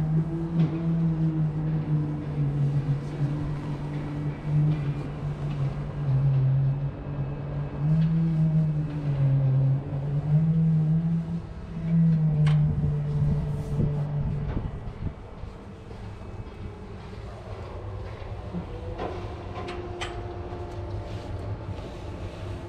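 A strong low droning hum that steps between a couple of pitches, giving way about two-thirds of the way through to a rougher low rumble like wind on the microphone. A few sharp metallic clicks come from climbing down the tower crane's steel mast ladder.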